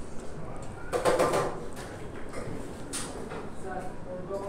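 Eatery background: faint voices and general noise, with a louder, brief noisy burst about a second in and a short click near three seconds.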